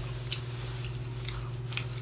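A few short, light clicks, about five in two seconds, over a steady low hum.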